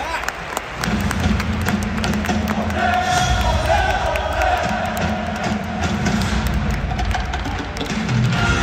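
Stadium PA music for the starting-lineup video, which swells in about a second in with sustained low notes.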